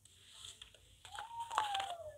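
A deck of cards being handled on a tabletop: soft papery rustling with light clicks as cards are shuffled and laid down. A faint held tone that falls slightly runs through the second half.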